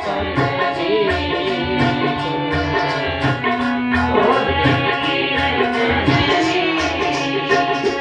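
Sikh kirtan: a woman singing to her own harmonium's held reed chords, with tabla strokes keeping a steady rhythm underneath.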